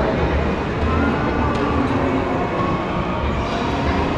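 Steady low rumbling din of an indoor shopping mall, heard through a moving handheld camera.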